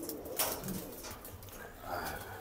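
Domestic pigeons cooing in a loft, with a single sharp click about half a second in.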